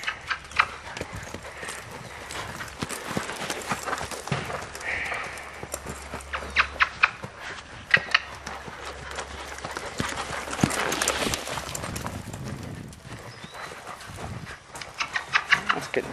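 Hoofbeats of a Percheron–Appaloosa cross mare loping on soft dirt footing. The strikes come in quick runs, clearest a few seconds in and near the end.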